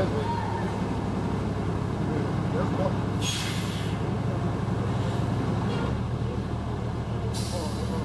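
City bus engine idling at the curb, with two sharp hisses of air released from its air brakes, the first lasting under a second about three seconds in and the second near the end.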